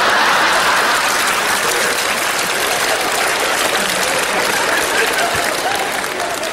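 Audience applause after a punchline, loudest at the start and slowly fading.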